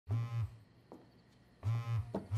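Mobile phone vibrating on a table: a low, buzzy double pulse just after the start and another near the end, about a second and a half apart, as for an incoming call or message.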